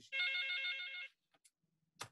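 Electronic telephone ringtone: a warbling trill lasting about a second.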